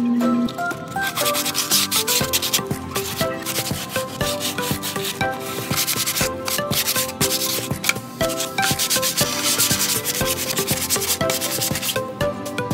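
Plywood edge sanded by hand, with bouts of quick back-and-forth scratchy strokes of the abrasive along the wood, over background music.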